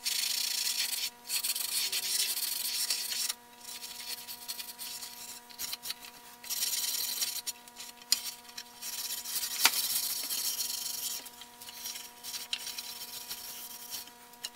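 Steel wool scrubbing back and forth along a varnished wooden quilt rack, in bursts of strokes with pauses between, working down the old varnish. A faint steady hum runs underneath, with one sharp click late on.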